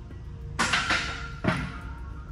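Two metal clanks, about a second apart, each followed by a short metallic ringing: the plate-loaded specialty squat bar and its steel plates knocking against the steel rack as the bar is brought back to the hooks. A steady background music bed runs underneath.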